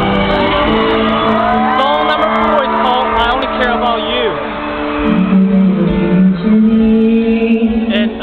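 Live concert music from the stage sound system: sustained keyboard chords, changing about five seconds in. Fans in the crowd scream and whoop over the music for the first half.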